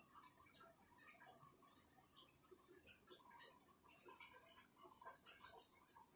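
Near silence: faint room tone with scattered soft ticks, a few of them about a second apart.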